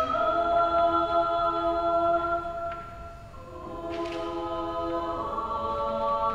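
Choir singing held chords, apparently unaccompanied; the sound dips briefly about three seconds in before the next phrase starts with a soft hiss of a consonant.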